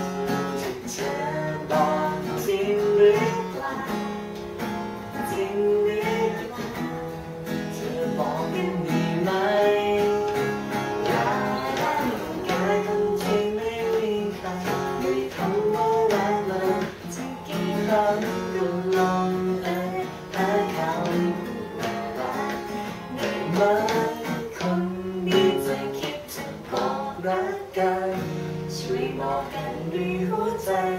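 Acoustic guitar strummed as the accompaniment to a woman and a man singing a song together.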